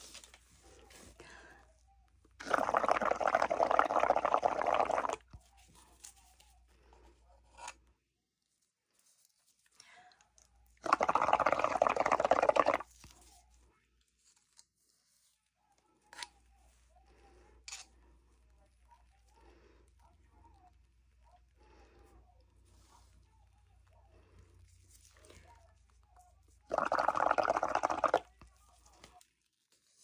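Air blown through a straw into a cup of soapy water, bubbling in three bouts of about two to three seconds each, with faint scattered clicks between the bouts.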